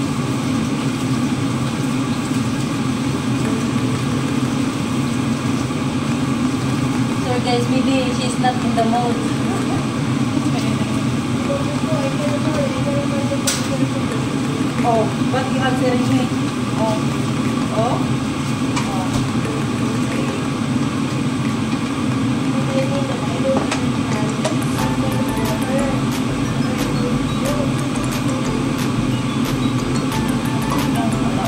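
Steady, even hum of a kitchen range hood exhaust fan running over the stove. Faint voices sit underneath, and there is one sharp click about halfway through.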